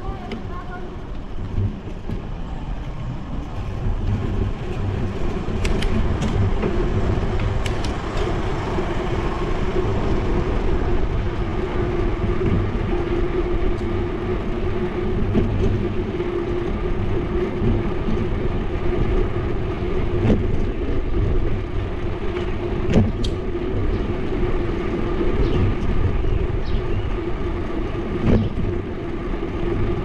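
Bicycle riding along an asphalt street, heard through a GoPro: a steady rumble of tyres and wind on the microphone with a constant hum, broken by scattered sharp clicks and rattles.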